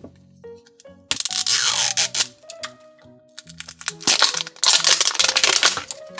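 Plastic wrapping being torn and peeled off a toy surprise ball, crackling and crinkling in two bursts, the first about a second in and the second near the end, over background music.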